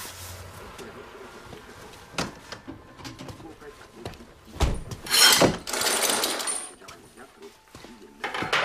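A metal barrier chain being let down by hand: a sharp click about two seconds in, then a louder metallic rattle and clatter around five seconds in, lasting a second or so.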